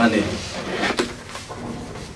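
A fabric violin case being unzipped and its lid lifted open, with rustling and one sharp click about a second in.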